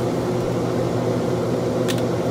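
A fan running with a steady hum, and one brief sharp click near the end.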